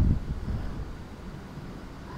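A pause in a man's speech through a headset microphone. The voice dies away in the first half second, leaving only a low, steady rumble of background noise.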